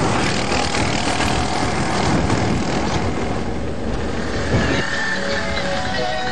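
Loud, steady outdoor noise from the field recording, with no clear single source; music notes come in about five seconds in.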